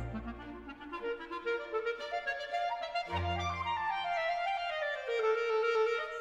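Instrumental background music: a melody of held notes, stepping downward in pitch over the second half.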